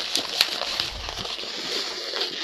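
An inflated 260Q latex modelling balloon rubbing and squeaking as one twisted bubble is pushed through two others to lock them in place, with a couple of small clicks near the start.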